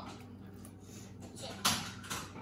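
Quiet room with a faint steady hum, broken by one short knock about one and a half seconds in.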